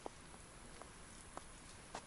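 Near silence: faint outdoor background hiss with a few soft, short ticks scattered through it.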